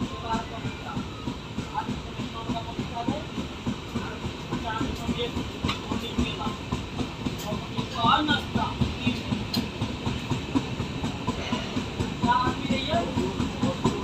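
Passenger train rolling out of a station, heard from an open coach door: the steady rumble of the wheels on the rails with a rapid clatter.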